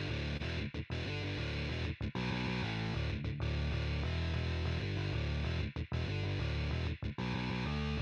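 A distorted rhythm guitar riff and a bass played back together from a Guitar Pro score, the bass doubling the guitar note for note. The riff runs in short palm-muted phrases with brief stops between them.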